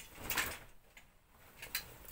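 Fabric rustling as a coat is lifted and handled, a short swish near the start, followed by a light click near the end, like a clothes hanger knocking.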